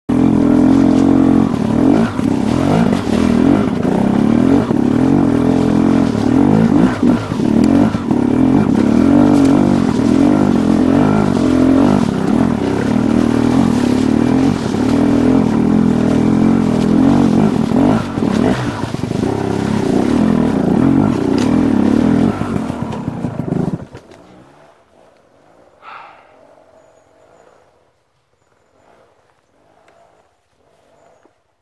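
Enduro dirt bike engine running loud while being ridden off-road, its revs rising and falling with the throttle. The engine sound cuts off abruptly near the end, leaving it quiet apart from a faint brief noise.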